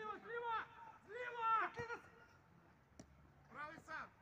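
Men shouting drawn-out calls to each other across a football pitch during play, in three bursts, with a short knock about three seconds in.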